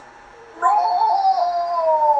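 A child's long, drawn-out whining "nooo", one high call held for well over a second that slowly falls in pitch, starting about half a second in.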